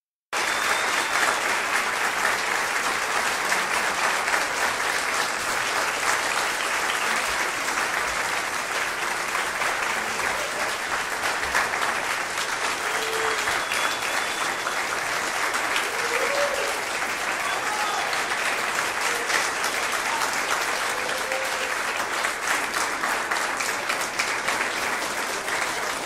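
Audience applauding steadily after a string orchestra piece, starting abruptly just after the start, with a few brief voices calling out over the clapping in the second half.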